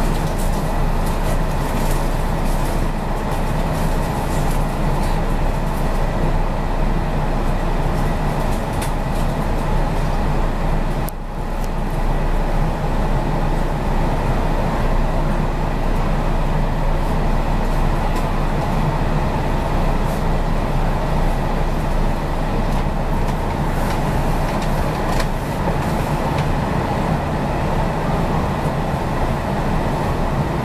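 Steady hum and whir of a stopped Kintetsu 5820 series electric train's onboard equipment, heard inside the passenger car as it stands at a station platform, with a thin steady whine over a low drone. It dips briefly about a third of the way through.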